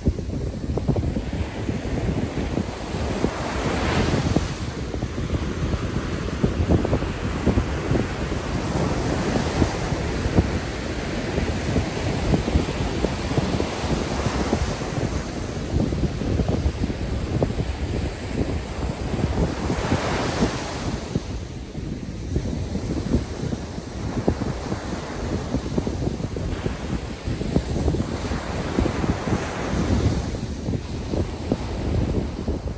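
Ocean surf breaking and washing up a sandy beach, swelling every several seconds as each wave breaks, with wind rumbling on the microphone.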